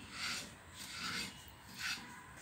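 Three soft scraping swishes, roughly half a second to a second apart.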